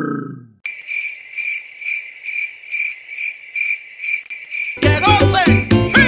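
Crickets chirping in a steady, even rhythm, about three chirps a second, starting abruptly under a second in after a short falling sound dies away. Music with a beat comes in about five seconds in.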